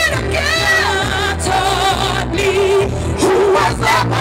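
A woman singing wordless held notes with strong vibrato and runs through a PA system, over amplified backing music with a steady low bass.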